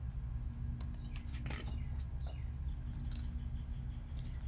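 Quiet porch ambience: a steady low hum, a few faint short bird chirps, and a soft paper rustle as a picture-book page is turned.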